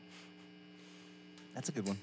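Steady electrical mains hum at a low level, with a short burst of a man's voice near the end.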